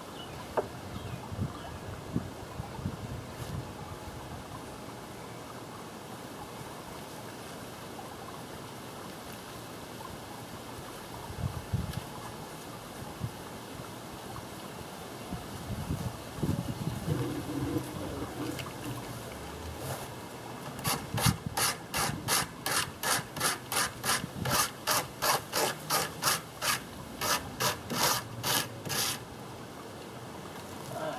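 Brush strokes spreading two-part epoxy over a plywood lid: scattered soft knocks and handling noise, then a steady run of scratchy back-and-forth rubbing strokes, about two a second, for the last several seconds.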